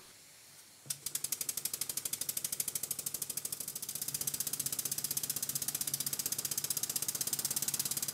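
Stuart 7A model steam engine running on compressed air. A click about a second in, then the exhaust beats come fast and even, about ten a second. It is running forward on its newly fitted valve gear with the timing close to right.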